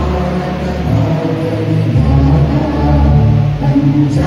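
Slow group singing with musical accompaniment, long held notes that shift in pitch every second or two.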